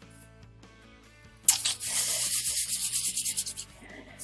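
Hands rubbed briskly together close to the microphone: a dry rustling in quick, even strokes, starting suddenly about a second and a half in and lasting about two seconds. Faint background music runs underneath.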